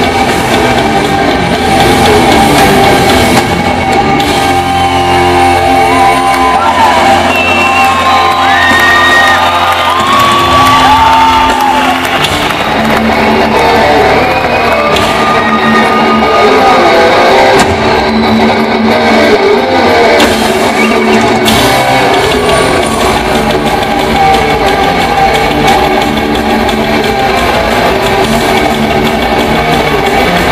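Heavy metal band playing live, with loud distorted electric guitars over drums. A high melodic line slides in pitch through the middle stretch.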